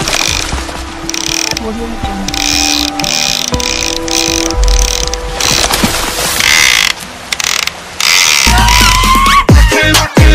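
Spinning fishing reel clicking in repeated bursts as a big hooked fish is fought on a bent rod, over background music. Near the end a louder electronic logo jingle with rising tones takes over.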